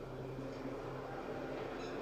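Marker pen writing on a whiteboard, with faint squeaks from the tip near the end, over a steady low hum.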